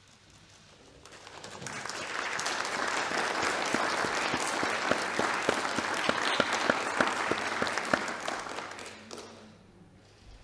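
Senators applauding in a chamber, the clapping building over the first two seconds, holding, then dying away near the end.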